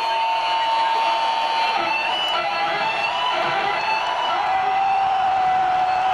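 Music over an arena PA with a crowd's steady noise beneath it, carried by one long held high note that drops to a lower held note near the end.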